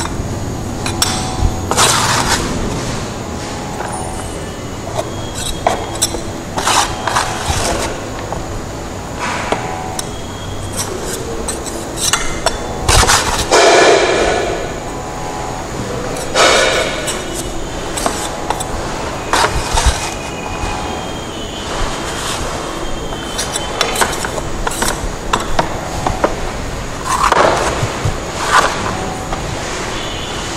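Steel trowel scraping and clinking against a metal Vicat mould as cement paste is pressed into it and levelled off, in irregular strokes with the loudest scrapes near the middle and near the end.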